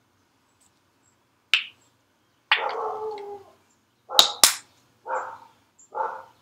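A plastic tube of curl cream is opened with a sharp click of its cap, then squeezed. It gives several short squelching sputters of air and cream, the two loudest coming about four seconds in.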